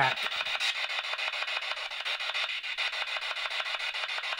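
Handheld spirit box sweeping through radio frequencies: a steady rasping static chopped into rapid pulses, many a second, with no clear words coming through.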